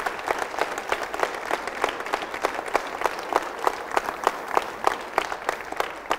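An audience applauding: many hands clapping steadily.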